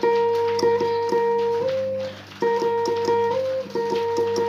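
Electric guitar playing a sustained single lead note that steps up in pitch near its end. The phrase breaks off about two seconds in and is played again with the same rise.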